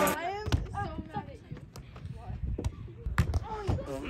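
Gaga ball game: a rubber ball slapped and knocking off the wooden walls of the pit, several sharp knocks spread out, two in quick succession a little after three seconds in, under scattered children's calls.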